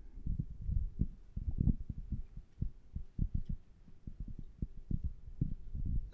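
A string of irregular, dull low thumps and bumps, many in quick uneven succession, with no speech.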